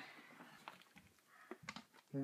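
Near silence, with a few faint short clicks in the second half.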